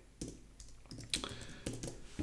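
Computer keyboard keystrokes: about half a dozen separate, irregularly spaced key taps while code is typed in an editor.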